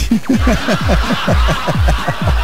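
A person laughing in a quick run of short chuckles, each one falling in pitch, heard through the steady hiss of a weak FM radio signal.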